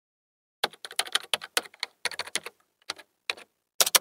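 Computer keyboard typing: a quick, uneven run of key clicks that starts about half a second in, with short pauses between bursts of keystrokes.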